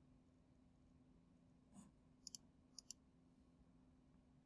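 Near silence with a faint steady hum, broken a little past the middle by two quick pairs of faint clicks about half a second apart, from a computer mouse being clicked.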